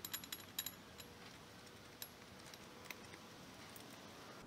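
Light metallic clicks and clinks of a socket driver working a fastener on a bare aluminium engine block: a quick run of about eight clicks in the first second, then single clicks roughly once a second.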